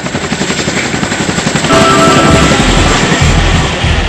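Helicopter rotor beat, a fast even chopping that grows louder, with dramatic trailer music and deep bass hits coming in about halfway.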